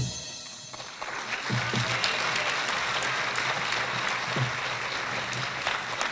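The last chord of a stage musical number fades away, and about a second in an audience breaks into steady applause.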